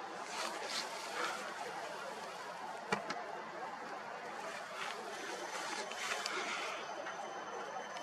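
Quiet outdoor background noise, a steady hiss, with one sharp click about three seconds in and a faint, thin high tone in the second half.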